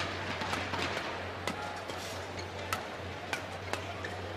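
Badminton rackets striking shuttlecocks in a warm-up rally: several sharp, short hits spaced irregularly over the steady murmur and hum of a large indoor arena.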